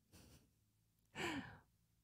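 Near silence, broken about a second in by one short audible breath from a woman close to the microphone.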